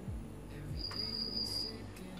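A faint, high-pitched steady tone lasting about a second in the middle of a quiet pause, over low background hiss.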